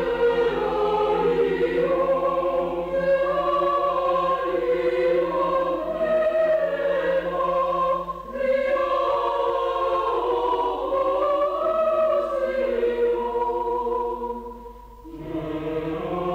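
Choir singing Greek Orthodox liturgical music in slow, sustained chords, with a held low note under the voices for the first half. A brief break comes about eight seconds in, and the sound falls away near the end before the next phrase starts.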